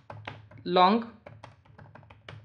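Computer keyboard typing: a quick run of separate keystrokes, about nine in two seconds.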